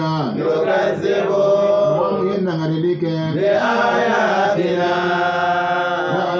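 A man chanting Quranic verses in Arabic into a microphone: long held notes with slow melodic turns, and a short break for breath about halfway through.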